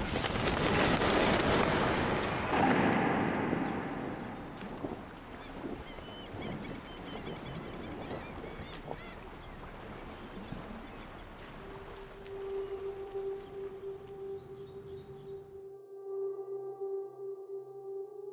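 Film soundtrack: a loud rush of noise that fades over the first few seconds into faint outdoor ambience with scattered chirps, then a steady humming drone note comes in about two-thirds of the way through and holds.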